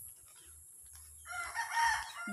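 A rooster crowing once, starting a little past a second in and lasting just under a second.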